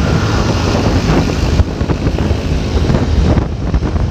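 Wind noise on the microphone over a steady, low vehicle rumble, as heard while riding in traffic.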